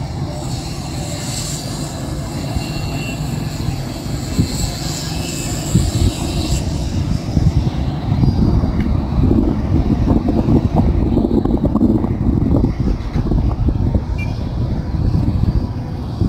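Wind buffeting the microphone: a rough, gusting rumble that grows stronger about halfway through. A higher hiss over it cuts off suddenly about six seconds in.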